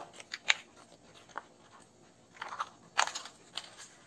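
Stiff paper of a folded paper car model crinkling and rustling as hands fit its pieces together, in a few short scattered crackles.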